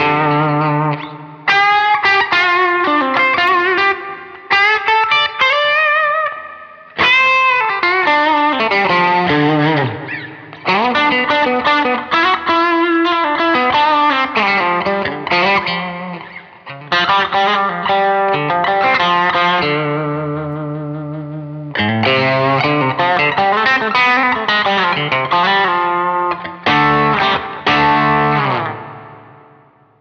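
Electric guitar, a Fender Custom Shop 1961 Stratocaster with Klein Epic Series 1962 single-coil pickups, played through a Two-Rock Silver Sterling Signature amp with overdrive: lead lines with string bends and some chords, in several phrases with short pauses between them. The last phrase dies away near the end.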